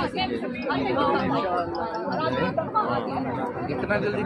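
Several people talking over one another in close-up conversational chatter, mostly women's voices.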